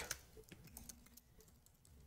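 Faint computer keyboard typing: a quick run of soft key clicks in the first second or so.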